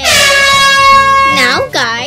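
A loud, high-pitched, buzzy voice-like sound effect: it slides down in pitch at the start, holds one long high note, then breaks into quick warbling syllables near the end, over light background music.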